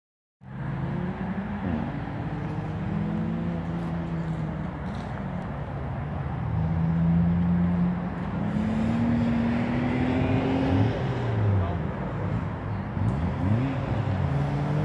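Car engines being driven hard round a track, the pitch climbing steadily through a long pull and then dropping sharply several times near the end, as at gear changes or braking.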